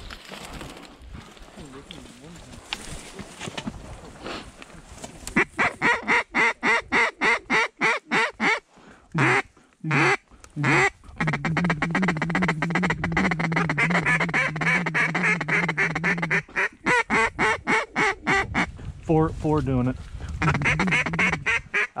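Duck calls blown by hunters: long runs of rapid, loud quacks, several notes a second, beginning about five seconds in after a quieter opening, with a couple of short breaks.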